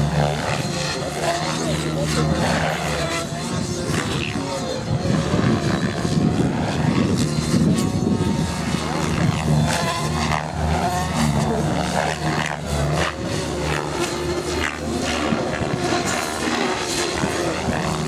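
Radio-controlled model helicopter flying aerobatic manoeuvres, its rotor and motor drone swelling and fading as it turns and climbs.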